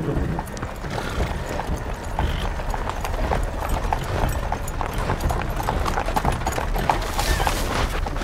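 Horses' hooves clip-clopping at a walk, many irregular hoofbeats, as a pair of horses draws a wooden carriage.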